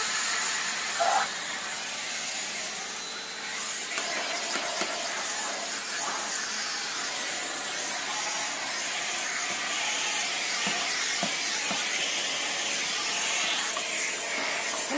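Numatic Henry canister vacuum cleaner running steadily, drawing air through its hose and wand as the nozzle is worked along a windowsill.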